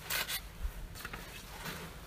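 A few brief rustling, rubbing noises and one dull low thump about two-thirds of a second in.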